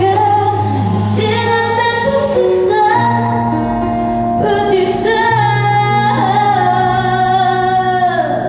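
A woman singing a song with band accompaniment, holding long notes over a steady bass line.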